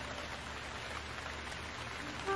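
Steady rain falling, an even hiss with no breaks, as a cartoon sound effect.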